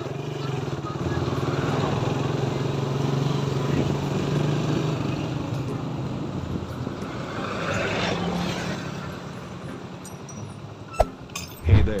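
Road traffic going by: a vehicle's engine hum swells and fades over the first few seconds, and another vehicle passes about eight seconds in. A sharp click comes near the end.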